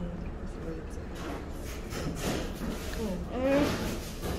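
Indistinct, quiet talking with a steady low hum underneath; the clearest voice comes near the end.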